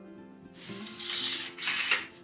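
A window being pulled open by hand: two rasping, ratchet-like pulls, the second shorter and louder near the end. Light acoustic guitar music plays underneath.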